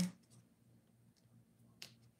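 Quiet handling of thin craft wire as it is wrapped around a small wire piece by hand, with one sharp click near the end.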